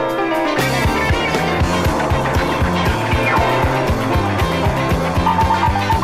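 Live rock and roll band playing an instrumental passage between vocal lines, with piano chords over bass and drums. A fast, steady beat comes in about half a second in.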